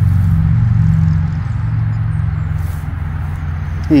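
A motor running with a steady low drone, a little louder in the first second or so.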